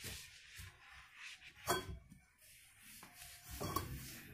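Cleaning cloth being wiped over a white nightstand: soft, irregular rubbing and handling noises, with one louder brief stroke a little before halfway.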